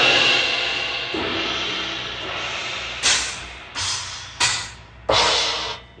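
A trashy Meinl Dual crash cymbal, struck hard and washing out over about two seconds. Then come several short, dry hits that cut off fast: explosive but really dry.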